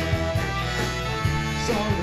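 A live band playing amplified pop-rock music through PA speakers, with a sustained bass line under a steady drum beat.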